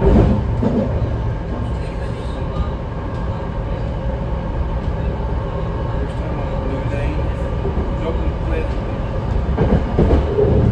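Steady low running rumble inside a BART Legacy Fleet car in motion, with faint steady whines over it. A sharp knock sounds right at the start.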